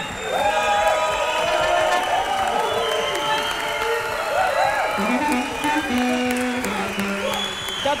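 Audience applauding and cheering while the band's instruments play loose, wavering notes; in the second half a low instrument holds two long notes, the second lower than the first.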